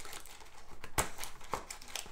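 Foil trading-card packs crinkling as they are pulled out of a cardboard hobby box by hand, with two small sharp clicks about a second and a second and a half in.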